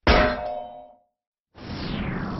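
A single metallic clang, the closing hit of an animated logo sting, ringing out and fading over about a second. After half a second of silence, a new noisy sound starts near the end and falls in pitch.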